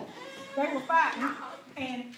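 A woman preaching loudly into a handheld microphone, her amplified voice in one impassioned stretch whose words are not clear, with a falling glide in pitch about a second in.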